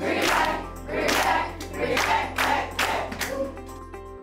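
A class of students clapping in a steady rhythm and voicing a cheer together, over background music that fades out near the end.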